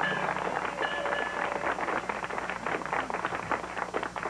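Audience applauding at the end of a bluegrass song, a dense steady patter of clapping hands.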